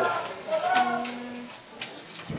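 A voice imitating a drum roll trails off, then a single hummed note is held for about a second. Near the end come brief rustles of paper slips as a hand draws one from a hat.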